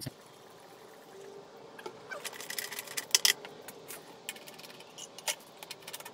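Light handling noises on a lawnmower: a quiet stretch, then a run of small clicks and taps as parts are handled, the loudest a little after three seconds in.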